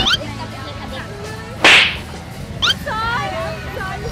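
A single short, sharp whip-like swish about one and a half seconds in, the loudest sound here: a sound effect added in the edit.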